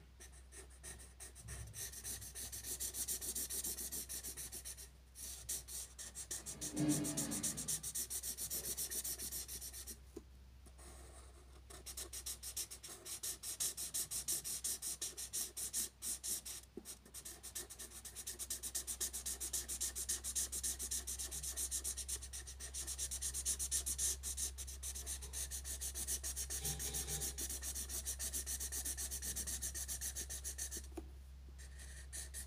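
Felt-tip marker scratching on paper in rapid colouring strokes, with a few short pauses; a brief lower sound about seven seconds in.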